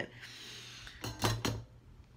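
Faint hiss from a hot soldering iron working flux and solder along a lead hobby came edge. About a second in it gives way to a few quick knocks and clicks as the iron and the stained-glass piece are handled.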